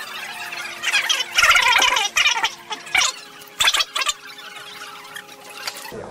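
Adhesive tape being pulled off rolls: a run of short, harsh, screeching bursts between about one and four seconds in. Faint steady tones run underneath.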